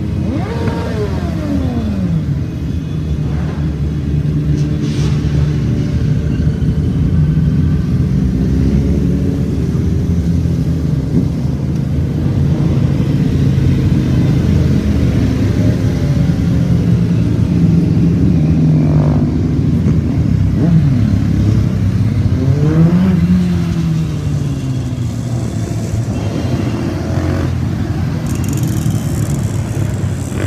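A procession of motorcycles riding past one after another at low speed, their engines running in a continuous rumble. Several pass close by, each with its engine note dropping in pitch as it goes past: once about a second in and again around two-thirds of the way through.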